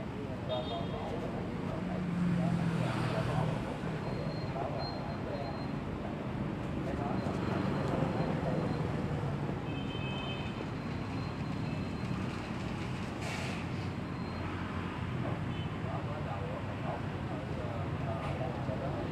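Steady street traffic noise with a low engine rumble that swells as vehicles pass, and indistinct voices in the background.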